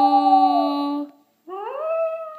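Schnoodle howling along with a person's held sung note. The howl slides down in pitch, and both stop about a second in. A new rising howl then starts and holds steady near the end.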